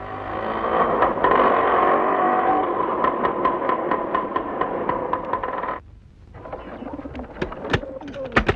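A small motorcycle's engine running with a steady ticking, then cutting off suddenly about six seconds in; a few faint clicks follow near the end.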